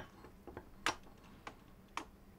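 A few faint, scattered ticks, about five in two seconds: drops of liquid draining from a liquid cooler's tubing into a bowl.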